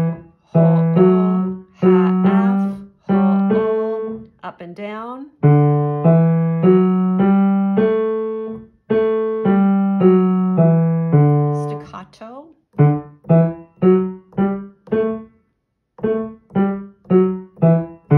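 Piano played with the left hand: the D major five-note pattern D–E–F♯–G–A in the low-middle register. It is first played as pairs of notes for each whole and half step, then legato up and back down. About two-thirds of the way through it switches to short, detached staccato notes, five up and five down.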